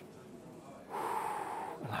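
A man's breathy gasp of surprise, just under a second long, starting about a second in after a short quiet pause.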